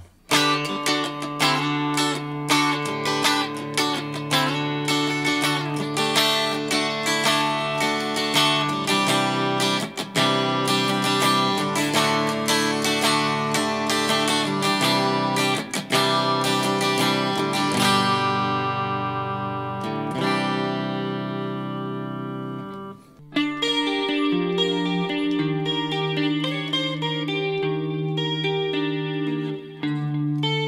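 Cort G250 SE electric guitar played with a clean tone on its rear VTH59 humbucker, coil-split to a single coil by pulling the push-pull tone knob. Picked chords and melodic lines, with one chord left ringing and fading for a few seconds about two-thirds through before a new phrase begins.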